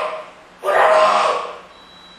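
A man's voice in a hall: his speech trails off, then a short, loud vocal exclamation comes about half a second in and fades. Near the end a faint, thin, steady high tone sets in.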